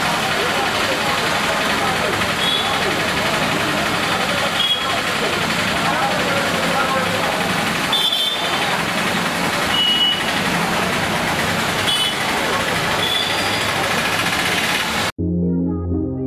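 Wet street in steady rain: rain hiss with motorbikes and traffic passing, background voices and a few short high beeps. About fifteen seconds in, it cuts abruptly to synthesizer outro music.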